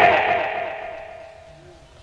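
Echo of a man's amplified speech through a public-address system, trailing off over about a second and a half, with a faint steady ring from the sound system under it.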